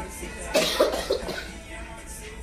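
A short burst from a person's voice, harsh at its onset, about half a second in, with background music underneath.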